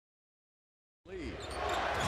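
Silence for about a second, then the sound of an NBA arena fades in and grows louder: crowd noise with a basketball bouncing on the hardwood court.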